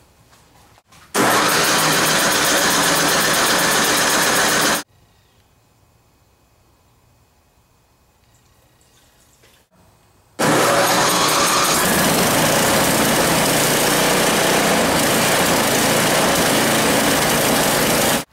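A Craftsman two-stage snowblower's four-stroke engine running steadily at speed, warming up so the oil is thin enough to drain. It runs in two loud stretches, cutting off abruptly about five seconds in and coming back just as abruptly after a quiet gap of about five seconds.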